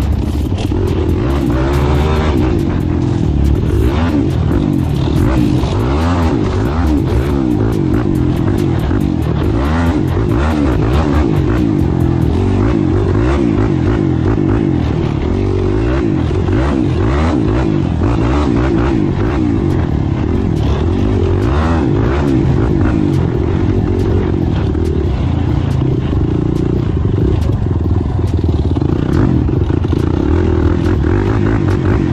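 Yamaha sport ATV engine running under throttle, its revs rising and falling continuously as it rides across sand.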